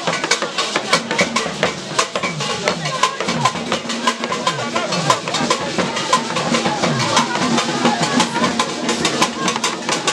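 Traditional hand drums and percussion played live in a fast, driving rhythm of many strokes a second, with crowd voices and singing mixed in.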